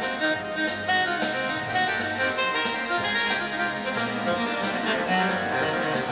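Hammond two-manual organ played live: a jazz tune with held chords and a melody line over a steady beat.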